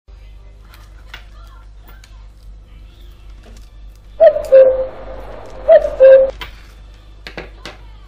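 Knife blade drawn along the edge of an Asus Fonepad 7 tablet to cut it open, giving two loud, squealing scraping strokes a little over a second apart. A couple of sharp clicks follow near the end.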